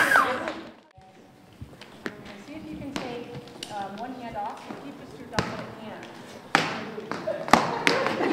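Recorded music cuts off about a second in, then a few sharp knocks of plastic hula hoops striking the stage floor among low chatter, with the echo of a large hall.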